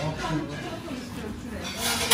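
Indistinct background voices with music, and a short burst of noise near the end.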